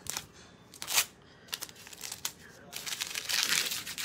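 A sheet of glitter adhesive vinyl crackling as it is handled, then crumpled up between the hands for about a second near the end.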